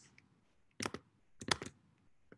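Computer keys clicking in two quick clusters, a few clicks a little under a second in and a louder few about half a second later.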